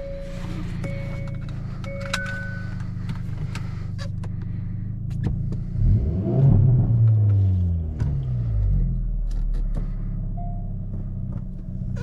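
Hyundai i30 N's 2.0-litre turbocharged four-cylinder engine idling, with a brief rise and fall in revs about six seconds in. A repeating two-tone warning chime pulses over the first couple of seconds, and sharp ticks are scattered throughout.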